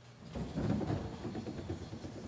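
Bowling pins struck by a ball: a low rumbling clatter that builds about a third of a second in, peaks just after, then dies away slowly.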